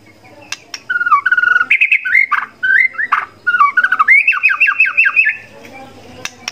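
White-rumped shama (murai batu) singing a loud, varied phrase of clear whistled notes, ending in a quick run of about eight falling notes near the end. Two sharp clicks come just before the song starts.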